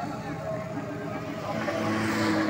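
Small motorcycle engines running at low speed as bikes pass close by, growing louder near the end as one goes right past.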